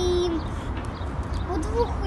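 A young girl's voice holding a drawn-out 'i...' for under half a second, then a pause and her speech resuming about a second and a half in, over a steady low rumble.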